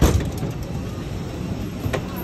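Airliner passenger door being unlatched and opened: a loud clunk from the door mechanism, then a steady low rumble of aircraft and ramp noise, with another click near the end.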